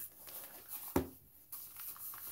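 Light rustling and handling of a small packed item in a fabric stuff sack, with a sharper rustle about a second in.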